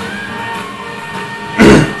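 Small swing band playing steadily. Near the end a man clears his throat once, loudly.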